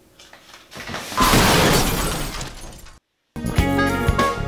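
A loud noisy swell, a transition sound effect, that builds about a second in and fades away. It cuts to a brief silence, and music with a beat starts near the end.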